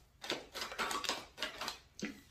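A deck of tarot cards being shuffled by hand: a quick, irregular run of soft card swishes and flicks.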